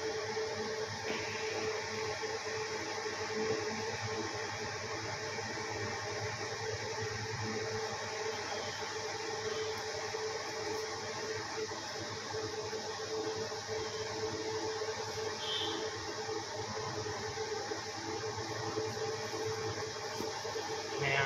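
A steady mechanical hum with a constant mid-pitched tone and a hiss, running evenly without change.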